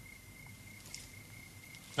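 Faint, steady high-pitched trill of crickets.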